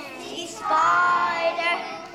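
A group of young children singing a song together, with one long held note about halfway through.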